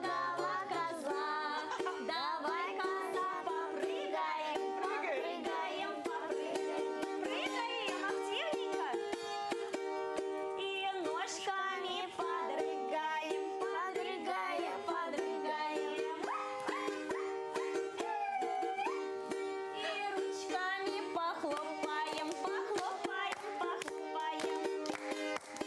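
Children's voices singing a Russian folk play-song about the goat, to balalaika accompaniment, the music running without a break.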